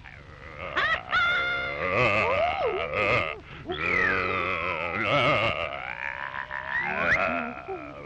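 Comic sound effects from an early sound-cartoon soundtrack: wavering, croaky pitched tones that slide up and down several times. The sharpest rising glides come about a second in, and a long falling slide comes about four seconds in.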